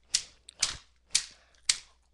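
Four sharp knocks on a hard surface, about two a second, as the surface is struck to shake Skittles loose.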